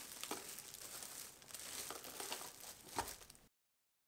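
Plastic shrink-wrap film crinkling faintly as it is handled at a film sealer, with a sharper knock about three seconds in. The sound then cuts off to dead silence.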